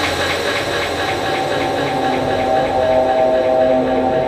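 Drum and bass track in a stripped-back passage: a gritty low drone with a fast, steady tick about six times a second over it, and a held tone coming in about halfway through.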